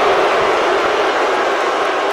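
Steady arena crowd noise, an even din of a large audience with no single voice standing out.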